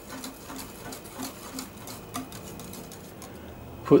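Whisk beating sour cream into strawberry purée in a glass bowl, the metal wires tapping the glass in a quick, even run of light clicks, several a second.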